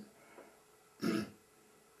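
A man clearing his throat once, briefly, about a second in, between quiet pauses.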